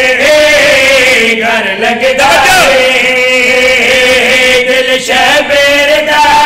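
A group of men's voices chanting a devotional refrain together through a microphone and loudspeakers, holding long drawn-out notes. The singing breaks briefly about two and five seconds in.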